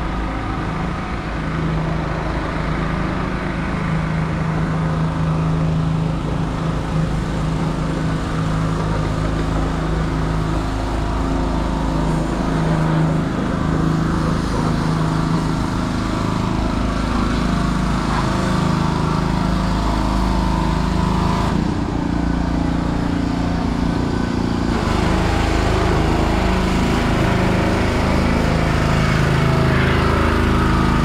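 Urban street traffic: a steady engine drone with the low rumble of passing vehicles.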